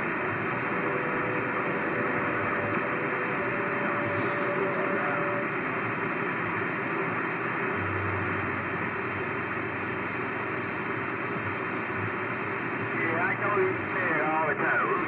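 CB radio receiving on channel 6: steady static hiss from the radio's speaker, with faint whistling carrier tones in the first few seconds. Near the end warbling voices start to break through the noise.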